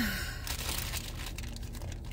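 Clear plastic wrapper crinkling as it is handled around a mini cotton yarn skein, loudest in the first half second, then softer, scattered rustles.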